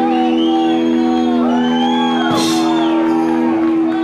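A rock band's final chord held and ringing on electric guitar and bass, with whoops and shouts over it; the held chord stops near the end.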